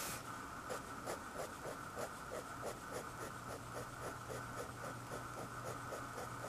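Fine-tipped pen scratching across paper in quick short hatching strokes, about four a second, over a faint steady hum.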